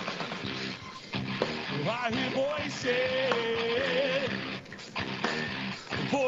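A rock band playing live, with drum kit and electric guitars. A melodic line bends and wavers in pitch over a dense, steady wall of sound.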